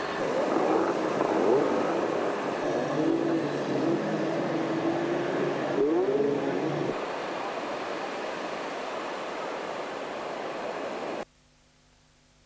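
Outboard motors of inflatable rescue boats revving in the surf, rising in pitch a couple of times, over steady surf noise. The engine note stops about seven seconds in. The surf carries on until the sound drops suddenly to near silence about eleven seconds in.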